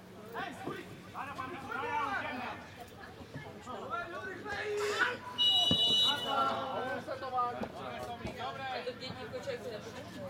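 A referee's whistle blown once, a short shrill blast about five and a half seconds in, stopping play as a player goes down. Players' voices call out on the pitch before and after it.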